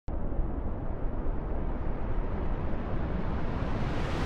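Deep, noisy cinematic rumble sound effect that starts suddenly and builds, its hiss growing higher and fuller toward the end.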